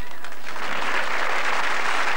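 Theatre audience applauding, growing stronger about half a second in.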